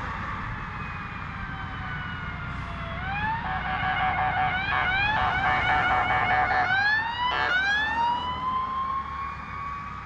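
Emergency vehicle siren coming in about three seconds in: rising wails, then a stretch of fast choppy cycling, a quick run of short rising chirps, and a long slow rising wail. Steady traffic noise underneath.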